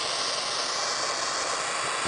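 Small propane torch burning with a steady, even hiss.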